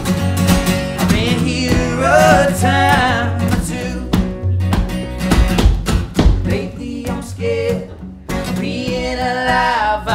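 Live band playing a country-folk song: a strummed acoustic guitar, an electric guitar and a Nord Electro keyboard, with wavering sung vocal lines over them. The music dips briefly about eight seconds in, then comes back.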